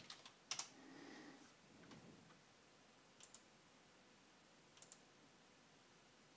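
Faint computer keyboard keystrokes and mouse clicks: a few quick key presses right at the start, then two paired clicks, one about three seconds in and one near five seconds.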